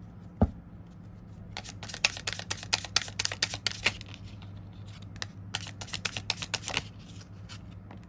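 Deck of tarot cards being shuffled by hand: two runs of quick card flicks and slaps, the first starting about a second and a half in and the second about five and a half seconds in, after a single knock near the start.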